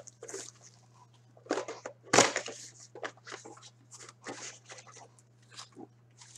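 Foil wrappers of hockey card packs crinkling and tearing as they are opened by hand, in irregular bursts, the sharpest a little over two seconds in. A steady low hum runs underneath.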